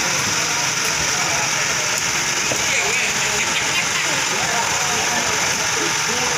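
An engine running steadily at idle, under the overlapping chatter of many people's voices.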